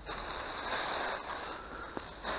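A plastic rubbish bag rustling and crinkling as it is handled, with a few faint clicks.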